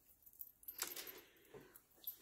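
Faint handling noises: a few light clicks and clinks with a little rustling, mostly in the first second.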